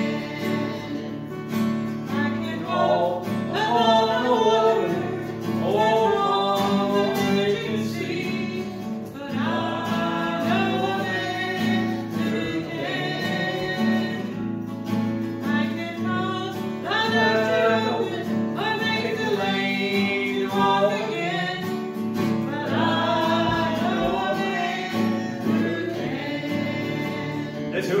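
A gospel song: a man and a woman singing together over steady instrumental accompaniment.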